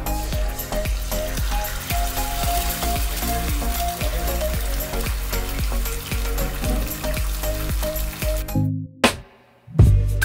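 Eggs sizzling as they fry in a hot cast iron skillet, under background music with a steady beat. Near the end everything cuts out for about a second.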